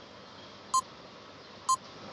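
Quiz countdown timer beeping: two short electronic pips about a second apart over a faint hiss.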